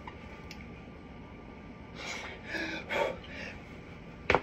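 A woman's strained, breathy effort noises and gasps, starting about halfway through, as she wrenches at a stuck blender lid with grip mitts.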